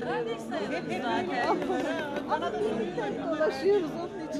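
Several people talking at once in a large hall: overlapping chatter and conversation, with no single voice standing out.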